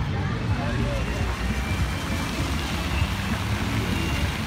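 City square ambience: a steady rumble of road traffic with people talking in the background.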